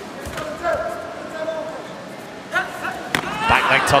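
Taekwondo bout in a sports hall: short shouts in the hall, then sharp smacks near the end as a kick is thrown.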